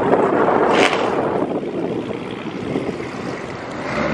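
Cars pulling away across a parking lot: engine and exhaust noise, loud at first and fading over a few seconds, with a short sharper sound about a second in.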